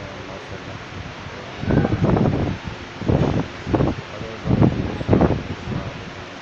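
A voice speaking a few short phrases aloud, read from a sheet of paper, over a steady background hiss.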